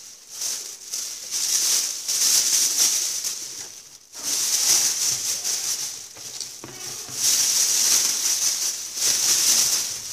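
Thin plastic bag crinkling and rustling as green peppers are handled and put into it, coming and going unevenly with a brief lull about four seconds in.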